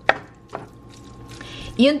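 Wooden spoon knocking against a pan while stirring pasta: one sharp knock just after the start and a lighter one about half a second in.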